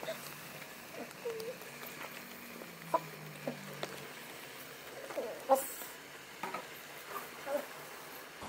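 Meat sizzling faintly in a wok, with a few light clicks and scrapes of a metal spatula against the pan as the pieces are turned.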